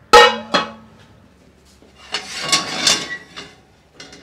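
A metal frying pan clanging twice against the gas stove's grates just after the start, the first hit ringing for about a second, then a longer rattling scrape of cookware on the stovetop about two seconds in, as the pan is swapped and set on the burner.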